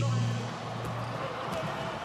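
Basketball game ambience on a broadcast: a steady, even murmur of court and crowd noise, with a low hum that fades out about a second in.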